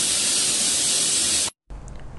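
Prestige Deluxe pressure cooker venting steam at its weight valve in a loud, steady hiss. This is its whistle, the sign that it has come up to pressure. The hiss cuts off suddenly about one and a half seconds in.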